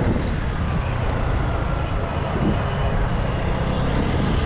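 Revolt Volta RS7 scooter's 125cc GY6-type single-cylinder four-stroke engine running while riding at low speed, under a steady rumble of road and wind noise on the helmet-mounted microphone.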